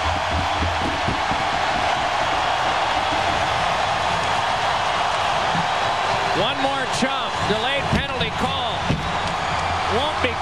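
Large hockey arena crowd cheering, a dense steady roar. In the last few seconds, individual shouts and whoops stand out above it.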